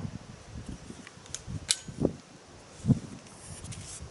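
Beeman P17 air pistol being handled and its top half swung open on its hinge: a few sharp clicks and dull knocks, the loudest knock near the end.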